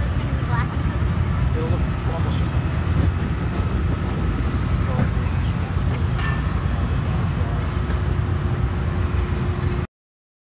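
Steady low outdoor rumble with a few faint short calls over it; it cuts off abruptly near the end.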